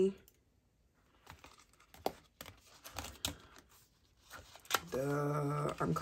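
Faint rustling and a few light clicks as a cash envelope is handled in a clear plastic budget binder and bills are pulled out. A woman's voice starts near the end.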